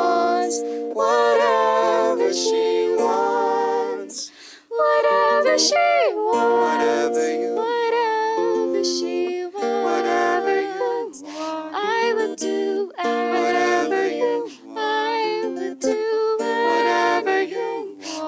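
Two voices singing in harmony, accompanied by an acoustic guitar, with a brief break in the sound about four and a half seconds in.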